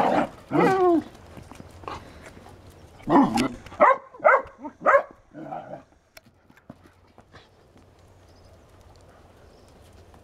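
Puppies barking and yapping while play-fighting: a couple of calls just after the start, then a run of about five loud barks about three to five seconds in, after which it goes much quieter.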